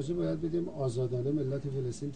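A man speaking Persian in a low, level voice, heard faintly beneath the English interpretation.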